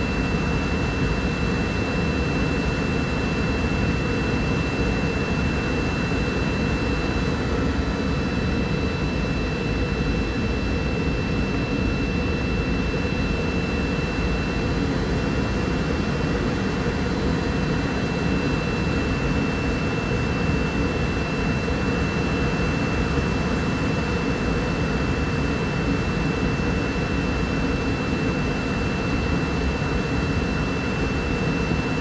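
Cabin noise inside a McDonnell Douglas MD-80 descending on approach: a steady low roar of airflow and its rear-mounted Pratt & Whitney JT8D turbofans, with a thin, steady high whine over it.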